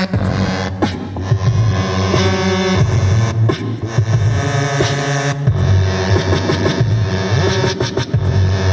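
Live electronic hip-hop music from a synthesizer keyboard through a mixer: a held bass line under chords, with a regular beat.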